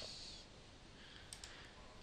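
Near silence, with a faint single click of a computer mouse button about two-thirds of the way through.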